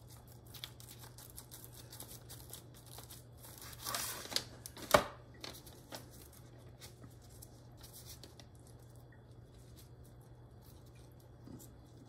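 Faint handling sounds of tender pressure-cooked pork spare ribs being cut and pulled apart on butcher paper: soft scattered clicks and a brief rustle of the paper, then a sharp knock about five seconds in as the knife is put down. A low steady hum runs underneath.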